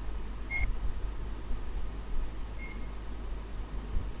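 Steady low background rumble with two brief, faint high-pitched beeps, one about half a second in and one after about two and a half seconds.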